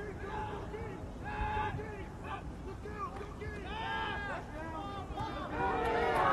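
Faint, distant voices talking and calling out, getting louder near the end.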